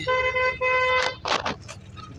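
Car horn sounding in short broken toots for about a second, a steady single-pitched blare heard from inside a car on a narrow hill road, followed by a brief burst of noise.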